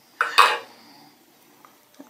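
Two quick clinks a fraction of a second apart, from the serum bottle and its cap being handled.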